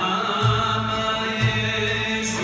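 Live Arab-Andalusian (Moroccan nuba) music: a male singer holds long, ornamented vocal notes over an orchestra of violins, ouds, double bass and hand drums, with low bass notes about once a second.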